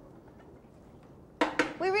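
Faint kitchen background, then two quick sharp metal clatters from a saucepan and lid being handled near the end, as a voice starts speaking.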